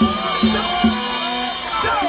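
Live cumbia band playing, with drum and cymbal strikes about every half second over low sustained notes, and voices from the crowd shouting and singing over the music.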